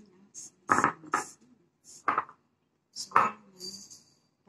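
A ceramic bowl of sesame seeds being handled on a stone counter: four loud knocks and scrapes, with the seeds rustling as a ball of ube halaya is rolled through them.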